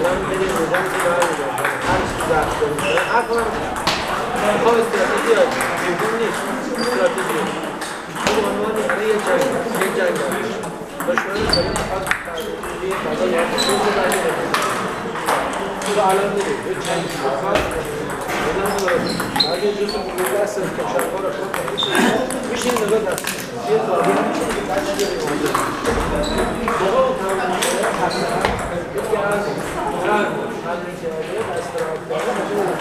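Table tennis balls clicking off paddles and tables, irregular hits and bounces from the rally and from other tables in the hall, some with a short high ping. A hall full of voices chatters underneath.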